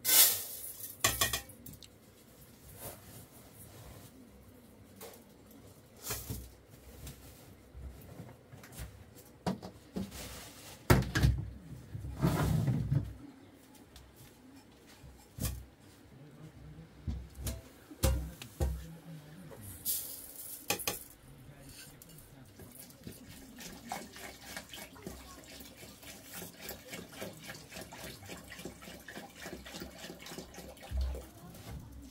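Metal pots, lids and bowls being handled and set down on the floor, giving scattered clanks and knocks, the loudest just after the start and around the middle. Near the end, water is poured from a plastic jerrycan into a metal pot.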